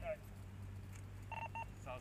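Two short electronic beeps in quick succession from a police radio, each a pair of steady tones sounding together, about a second and a half in.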